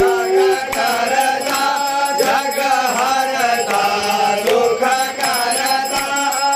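A group of men singing a Hindu aarti hymn together in unison, with a beat of regular strikes underneath. A steady held tone stops about half a second in.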